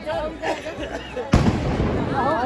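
Firecrackers going off: a sharp bang about halfway through and a louder one near the end, over the voices of a crowd.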